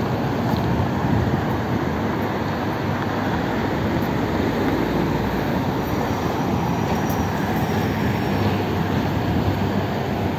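Steady outdoor background noise: a continuous low rumble with no distinct events or changes.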